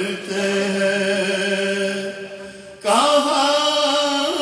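A male voice reciting a naat, an Urdu devotional poem in praise of the Prophet, in a chanted melodic style. He holds one long note that slowly fades, then begins a new, louder phrase with a rising pitch about three seconds in.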